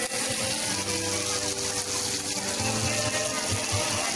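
Meat sizzling on a grill, a steady hiss, with music playing over it.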